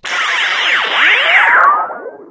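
Synthesized swoosh sound effect ending a channel's intro jingle: many pitch glides swooping up and down together over a hiss, with a high tone sliding slowly down. It fades out at the end.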